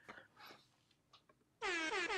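Air-horn sound effect of a live-stream Super Chat alert starting about one and a half seconds in: a quick run of short repeated blasts going into a held blast.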